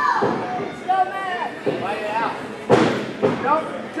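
Heavy thud of a body hitting the wrestling ring about three seconds in, the loudest sound, with two weaker thuds before it, under shouting voices from the crowd.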